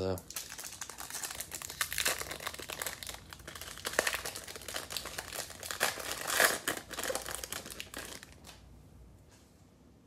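A baseball card pack's foil wrapper being torn open and crinkled off the cards by hand: a dense crinkling that runs for about eight seconds, louder around two, four and six seconds in, then stops.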